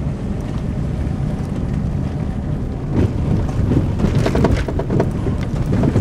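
Car driving over a potholed road, heard from inside the cabin: a steady low engine and road rumble, with short knocks and jolts coming more often from about three seconds in as the wheels hit the holes.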